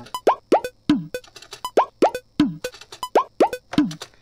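A programmed Bhojpuri drum loop playing back in the DAW: hudka (hourglass drum) strokes that slide up in pitch, in pairs, with a kick drum that drops in pitch, the pattern repeating about every second and a half.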